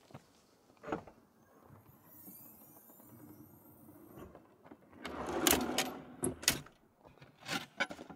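Wooden storage drawer in an SUV's cargo area pulled out on metal ball-bearing slides: a short rolling slide with sharp clicks about five seconds in, then a few separate knocks and clatter near the end as gear in the drawer is handled.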